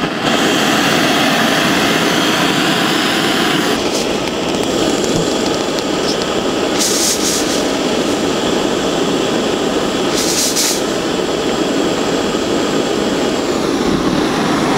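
Gas-fired smoke cannon (fumigator) running with a steady, jet-like burner noise as it vaporises a kerosene and Bipin (amitraz) solution into treatment smoke against varroa mites. Two short, higher hisses come about seven and ten seconds in.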